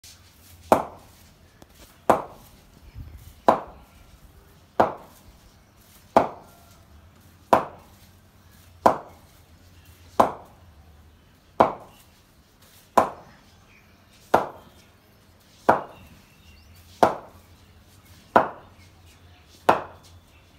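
A cricket bat striking a ball again and again in a steady rhythm, fifteen sharp knocks about one and a third seconds apart, each with a short ring.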